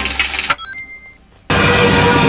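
Film action soundtrack: loud mixed music and effects cut off about half a second in, followed by a few short high electronic beeps and a brief lull. A loud continuous rushing sound with music over it then starts suddenly, as the scene cuts to the aircraft cabin.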